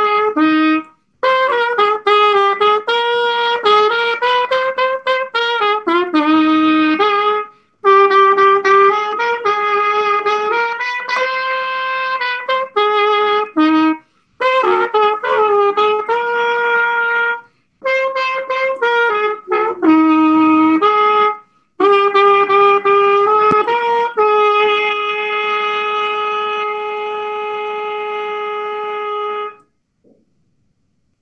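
Solo trumpet playing a hymn melody in phrases, with short breaks for breath between them, ending on a long held note that stops just before the end.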